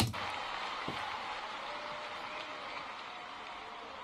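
Quiet, steady crowd noise of an arena concert recording, with a few faint held tones, slowly fading.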